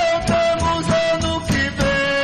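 Terno de Reis folk music with guitar and accordion: a long held note over a steady strummed beat.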